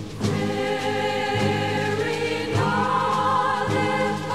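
Christmas choral music: a choir singing held chords, with the low part changing note about once a second.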